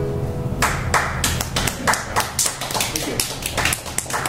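The last notes of a nylon-string classical guitar fade out, then scattered hand-clapping from a few listeners begins about half a second in: irregular, separate claps.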